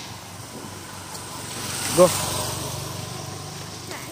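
A motorcycle passing close by: its engine rises to a peak about halfway through, then fades away.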